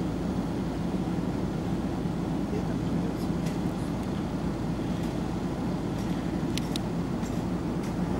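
A vehicle engine idling with a steady low hum, with a few faint clicks in the second half.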